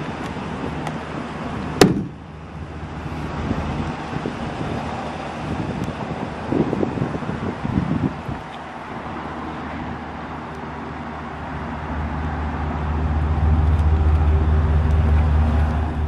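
Outdoor vehicle noise with a sharp click a little under two seconds in. A steady low engine hum grows louder over the last few seconds.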